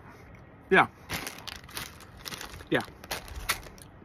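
Plastic bag of jelly beans crinkling and crackling as it is handled and stood up, a dense run of sharp crinkles lasting about two and a half seconds.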